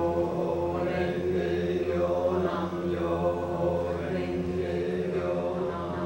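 Voices chanting in long, steady held tones over a low drone, the tone colour shifting slowly without a break.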